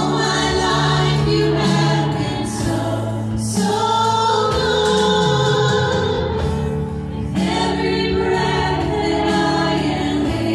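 A live church worship band playing a song: several voices singing together over acoustic guitar and band accompaniment, with a short pause between phrases about seven seconds in.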